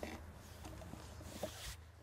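Faint handling noise of a plastic soda bottle with wooden spoons pushed through it, being turned over in the hands.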